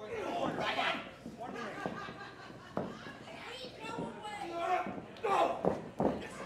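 Voices of spectators and ringside people shouting and talking over one another, with one sharp smack a little under three seconds in.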